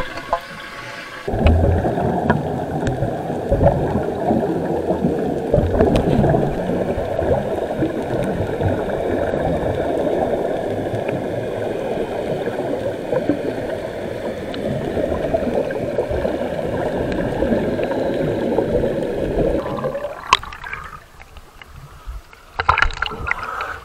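Muffled, continuous bubbling and gurgling of air streaming from helmet-diving helmets, heard underwater through an action camera's waterproof housing. It falls away near the end as the camera comes up to the surface.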